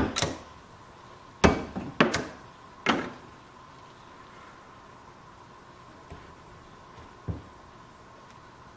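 Hard knocks of a steel pipe wrench being handled and set against a PVC fitting held in a bench vise: a clatter at the start, three sharp knocks in the first three seconds, then two faint taps near the end.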